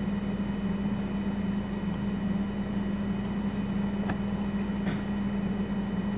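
Steady low hum with a faint hiss of background room noise, with two faint clicks about four and five seconds in.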